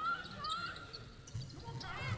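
Faint basketball court sound from the arena floor: a ball bouncing and short squeaks of shoes on the hardwood, over faint crowd voices.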